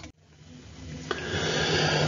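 A short click, then a long breath drawn in through the mouth that grows steadily louder over more than a second.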